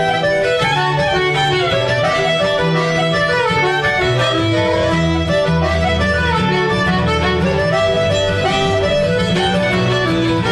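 Live Irish traditional music: fiddle and button accordion playing the melody of a dance tune together over a strummed acoustic guitar, at a steady lively pace. The tune is one of a set of Kerry polkas.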